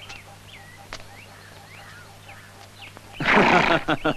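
Faint bird chirps over a low steady hum, then near the end a horse whinnies loudly, the call breaking into quick pulses.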